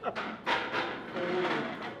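A man's exclamation of "Wow!" and men laughing, over background music with a drum beat.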